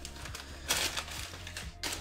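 Brown tissue paper rustling and crinkling as it is pulled out of a cardboard box, loudest about three-quarters of a second in.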